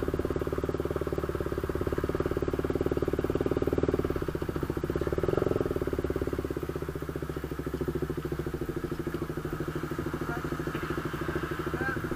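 Sport motorcycle engine idling steadily, swelling slightly twice, about four and five and a half seconds in.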